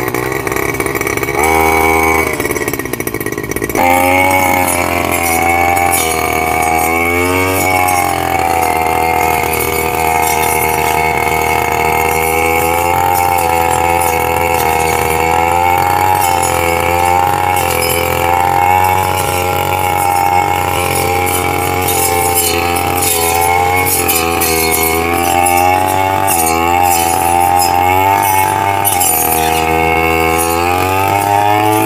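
Backpack brush cutter engine running at high speed, its pitch rising and falling over and over as the throttle is worked, while its round toothed disc blade cuts through tall weeds and grass.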